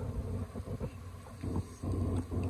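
Low wind rumble buffeting the microphone, swelling near the end, with a few faint small clicks.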